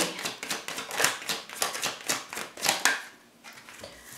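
A tarot deck shuffled by hand: a quick, irregular run of card clicks and slaps, with cards slipping out and landing on the table. The shuffling stops about three seconds in.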